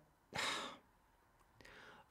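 A man draws one short breath, about half a second long, in a pause between words.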